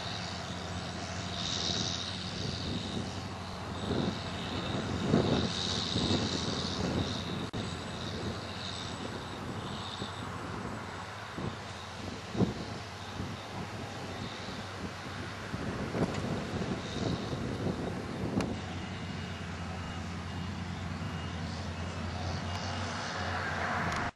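Self-propelled Dewulf Mega R3000 potato harvester at work, its diesel engine running with a steady drone, with irregular louder swells and a few short knocks.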